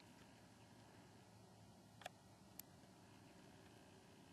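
Near silence: faint outdoor room tone with two brief soft clicks, about two seconds in and again about half a second later.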